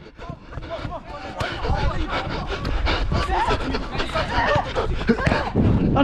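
Heavy panting of a footballer running with a body-worn camera, under players' shouts across the pitch.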